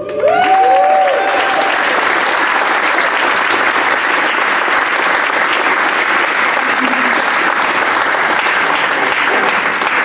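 Theatre audience applauding at the end of a song, with a few whoops in the first second or so, then steady clapping.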